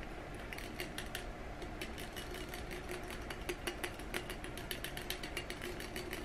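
Rapid, irregular light clicks and taps of a marker knocking against the inside of a glass bottle as it is stirred in water to dye it.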